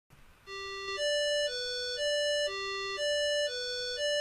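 MOTU PolySynth software synthesizer playing a simple sequenced line of single electronic notes from a G major chord, in a repeating G, D, B, D pattern at about two notes a second, starting about half a second in.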